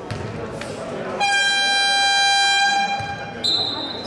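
A basketball bounces twice on the hardwood court. Then the arena's game buzzer sounds one steady, loud electronic tone for about two seconds, and a short high referee's whistle blast follows near the end. Crowd chatter fills the hall throughout.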